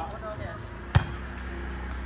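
A single sharp smack of a volleyball struck by a player's hands, about a second in.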